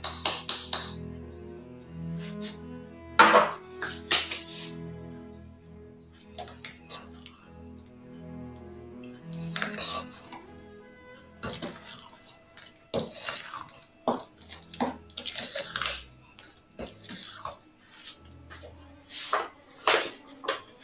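Spatula stirring cake batter in a glass bowl, with repeated scraping strokes against the glass that come more often in the second half, over soft background music.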